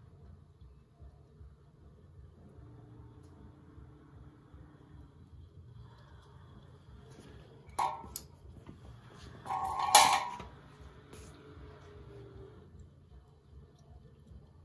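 Steel electrical box clanking as a robot gripper sets it down on a hard floor: a sharp metallic clink just before eight seconds in, then a louder clank with a short ring about two seconds later, over a low steady hum.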